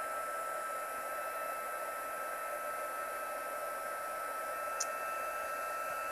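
Embossing heat tool blowing steadily, a rush of hot air with a steady whine from its fan, as it melts clear embossing powder on stamped cardstock.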